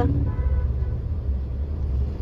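Steady low rumble of a small car's engine and road noise, heard from inside the cabin while it moves slowly through traffic.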